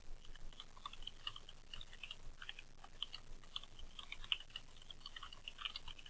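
Typing on a computer keyboard: a quiet, quick and irregular run of key clicks, several a second, as a sentence is typed.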